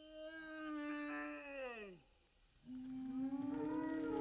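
Long, low hooting calls in the style of a brachiosaurus song. The first is a man's imitation through cupped hands: held for about a second and a half, then dropping in pitch and stopping about two seconds in. After a short gap, a second long call starts, held steady with a slight rise.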